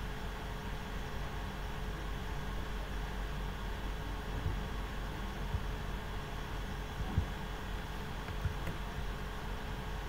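Steady low hum and hiss of background room tone, with a few faint taps spread through it.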